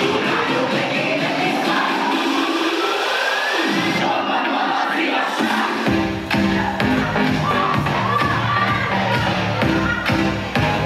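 Electronic dance music played loud through PA speakers: a build-up with a rising synth sweep while the bass is cut out, then the bass and beat drop back in about six seconds in.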